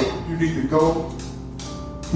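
Keyboard holding sustained chords behind a preacher's loud voice, which delivers one phrase during the first second.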